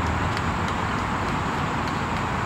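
Steady rushing background noise with a few faint ticks.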